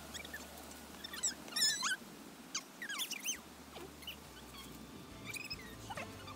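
Voices played back sped up, high and squeaky, in a few short bursts, with a faint low music bed underneath.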